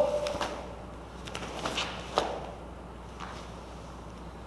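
A few soft rustles and short taps from a cotton karate uniform and bare feet on foam mats as a stepping, blocking and punching drill is performed, with the echo of a shouted count dying away at the start.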